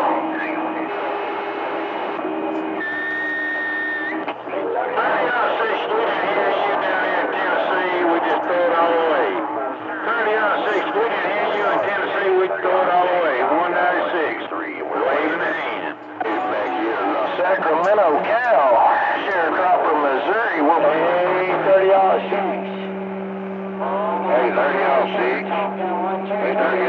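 CB radio receiver audio, band-limited and noisy: several garbled, overlapping distant voices are on the channel at once, none of them clear. Steady whistle-like tones sit over the voices, a higher one a few seconds in and two low ones near the end: heterodynes from carriers keyed on the same channel.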